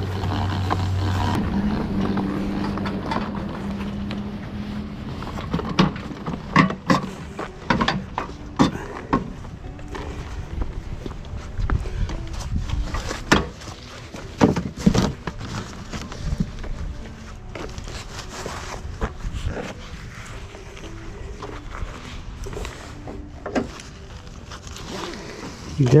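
Sharp clicks and clanks of a metal-framed push broadcast spreader being loaded onto a mesh trailer and tied down with a ratchet strap, the knocks coming thickest in the middle of the stretch. A steady hum runs through the first few seconds.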